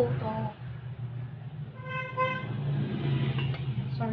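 A vehicle horn gives two short toots in quick succession about two seconds in, over a steady low hum.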